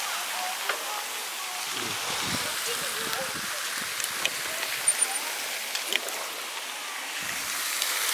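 Bicycle rolling along an asphalt path: a steady hiss of tyres and passing air, with a few light clicks from the bike.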